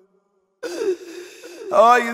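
A male eulogist chanting a mourning lament. His held note fades out, and after half a second of silence he gives a breathy, sobbing gasp. Just before the end he resumes with a strong, wavering held note.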